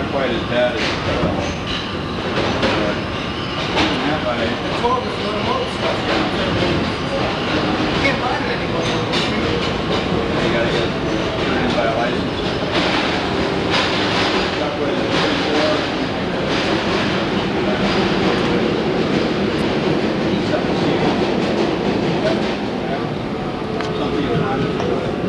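Kawasaki R110A subway car running between stations, heard from inside the car: a steady rumble of wheels on rail with repeated clicks over the rail joints.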